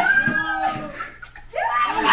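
Young people shrieking and squealing with nervous excitement, a high wavering cry for about the first second, then a short lull and another yell rising near the end.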